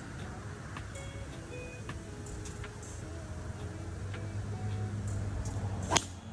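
A golf driver strikes a ball off the tee just before the end: one sharp crack, the loudest sound. Before it there is a low steady hum.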